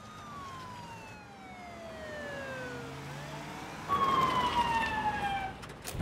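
Police car siren wailing. The pitch falls slowly over about three seconds, rises again, and comes back louder about four seconds in before falling once more.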